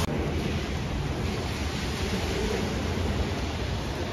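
Steady, even rushing noise of an automatic car wash tunnel's equipment, with no distinct knocks or changes.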